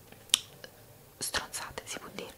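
A brief pause in soft, close-miked whispered speech. A short sharp mouth sound comes about a third of a second in, and breathy whispered speech sounds resume after about a second.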